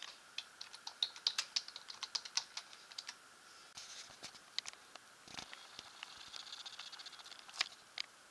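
Typing on a computer keyboard: a quick run of key clicks over the first few seconds, then scattered clicks and a faint fast ticking in the second half.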